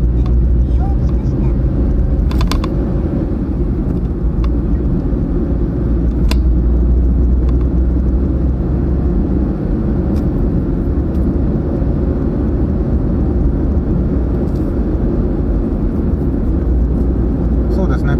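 Steady low rumble of a car's engine and tyres on the road, heard from inside the cabin while driving at speed, with a couple of brief faint clicks.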